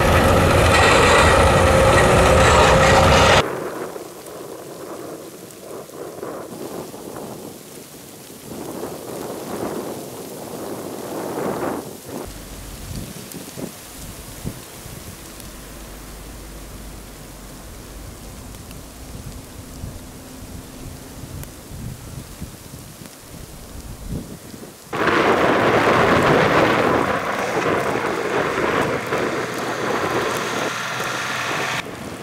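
Blizzard wind noise and snowplow engines. It is loud with an engine tone for the first three seconds, then drops to quieter uneven noise with a low hum through the middle. From about 25 s it turns loud again as a tractor snowplow with a front blade comes through the snow.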